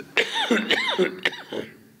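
A man coughing, a quick run of about four coughs into his fist close to a microphone, dying away after about a second and a half.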